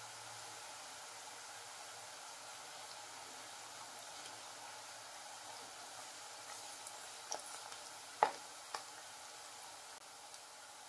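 Ribbon pakoda strips deep-frying in hot oil: a steady, faint sizzle. Near the end come a few light clicks as a slotted steel spoon touches the pan.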